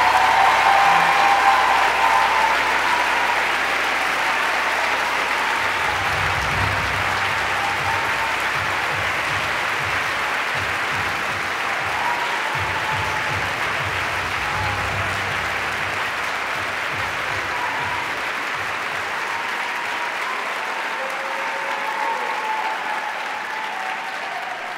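Large audience applauding, loudest at the start and slowly dying down over the following twenty seconds.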